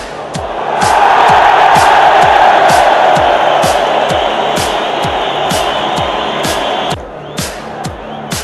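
A stadium crowd cheering a goal, rising about a second in and cutting off suddenly near the end, over music with a steady beat.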